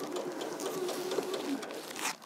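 Domestic electric sewing machine running steadily, stitching a seam through pieced quilting cotton.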